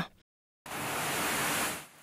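A brief dead silence, then about a second of steady, even hiss that fades out near the end.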